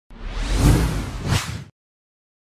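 News logo ident sound effect: a whoosh over a deep low rumble, swelling twice and cutting off sharply near the end.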